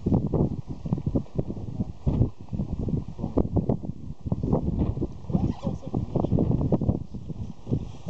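Wind buffeting the camera's microphone, a loud, low, uneven noise that surges and drops in quick gusts.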